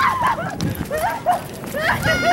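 Short excited cries and laughs from dizzy people staggering off a spinning playground ride, with quick footfalls on grass.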